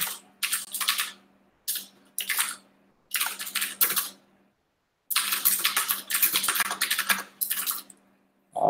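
Computer keyboard typing in several quick bursts of keystrokes separated by short pauses, the longest run a little past the middle.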